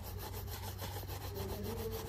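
Wooden-backed bristle shoe brush rubbing back and forth over a black leather shoe, a steady scrubbing sound: the shoe is being brushed clean before it is polished.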